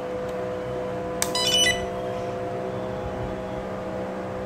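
A steady hum made of several held tones. About a second in comes a sharp click, then a brief high chirping burst of about half a second.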